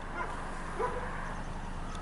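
Low steady rumble of a distant CSX freight train's diesel locomotive, with a short faint higher tone a little under a second in.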